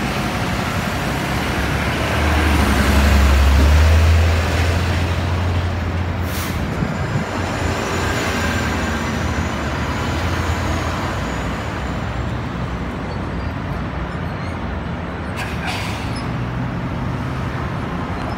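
City street traffic: a steady wash of vehicle noise, with a heavy truck's low engine rumble swelling loudest in the first few seconds and then fading. Two short hisses stand out, one about six seconds in and another near the end.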